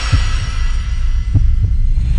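Deep bass thumps pulsing over a low rumble, the sound design of an animated logo intro, while a high shimmering swell fades out early on.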